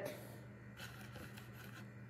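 Faint clicks and light rustle of cardboard jigsaw pieces being moved and sorted by hand on a puzzle board, a few soft ticks over a low room hum.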